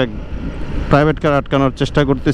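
Suzuki Gixxer motorcycle riding at about 50 km/h: a steady low rumble of wind and engine on the camera microphone. A man's voice talks over it from about a second in.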